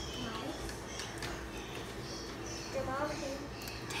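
Faint voice sounds, a brief one just after the start and another about three seconds in, over a steady low hum and quiet room noise.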